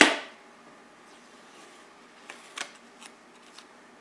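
Small handling sounds from a utility knife and painter's tape on a wooden board: one sharp click right at the start, then a few faint light taps and ticks.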